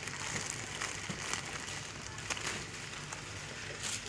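Plastic instant-noodle packets rustling and crinkling lightly in the hand as they are taken off a shelf, in short scattered crackles over a low steady background hum.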